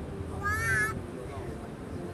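River-cruise boat's engine running steadily, with a short, high, wavering cry about half a second in.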